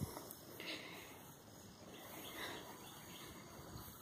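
Quiet outdoor background with a few faint, brief sounds, none standing out.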